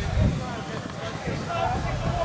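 Indistinct voices of players and spectators calling and talking at a rugby match, over a low rumble of wind on the microphone.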